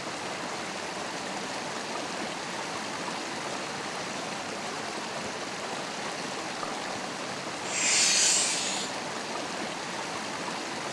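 Shallow woodland stream running steadily over rocks. About eight seconds in, a brief, loud hissing swish lasting about a second rises over it.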